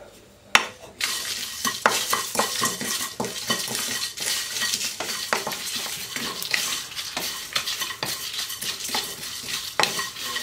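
A wooden spatula stirs and scrapes whole spices (coriander seeds, dried red chillies, leaves) roasting in a wok for biriyani masala. The seeds and spatula make a steady light crackle with many quick clicks against the pan. One sharp knock comes about half a second in, and the stirring starts about a second in.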